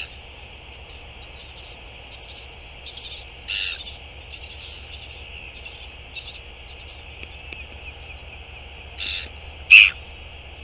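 Short bird calls outdoors: one about three and a half seconds in, another about nine seconds in, and the loudest just before the end, over a steady high-pitched hiss and a low rumble.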